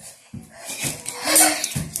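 A boy gasping and breathing hard in short, noisy bursts after a fright, with a brief voiced sound near the end.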